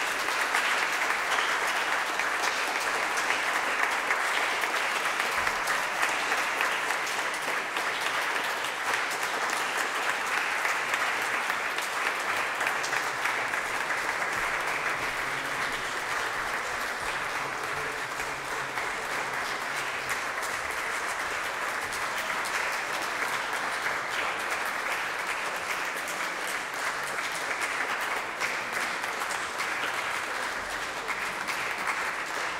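Concert audience applauding steadily with sustained clapping, easing slightly in the second half.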